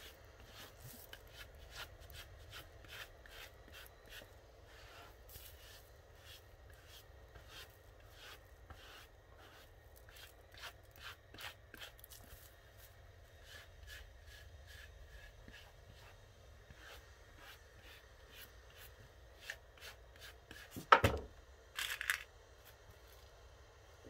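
Soft brushing strokes on felt: a hat brush worked repeatedly over the nap of a felt cloche in quick, light strokes. About 21 seconds in there is a loud knock, followed a second later by a short noisy burst.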